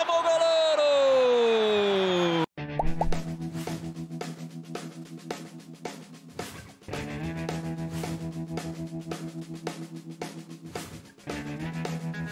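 A long held shout by a football commentator, slowly falling in pitch, cut off abruptly about two and a half seconds in. Then an outro music track with a steady low note and a regular beat.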